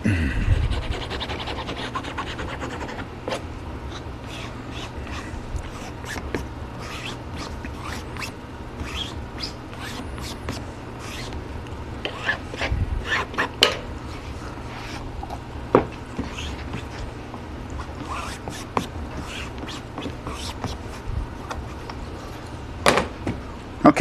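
Bone folder rubbing book cloth down onto the glued spine of a paperback: a run of short scraping strokes and small taps over a steady low hum.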